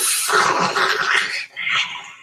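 A man's loud raspy growl: one long growl, then a shorter one about a second and a half in.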